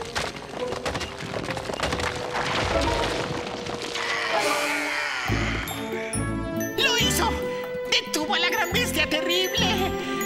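Cartoon soundtrack music. Rocks clatter and rattle over a held tone for the first four seconds or so. From about five seconds in a bouncy cue with a steady bass beat takes over, with quick, high, squeaky chattering on top.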